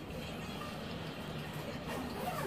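Steady low background noise with no distinct event in it.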